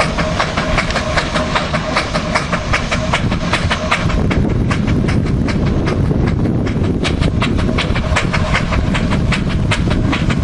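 Steam traction engine hauling a loaded timber trailer, its exhaust beating in a quick, even rhythm. A low wind rumble on the microphone sits beneath and grows heavier about four seconds in.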